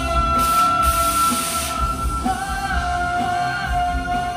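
Live pop band with a male vocalist holding long sung notes over drums, bass and electric guitar, played through a concert PA. A cymbal wash comes in about half a second in.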